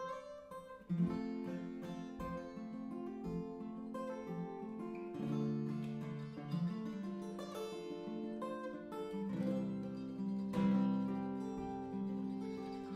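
Acoustic guitar playing the opening of a song, picked notes ringing on over one another.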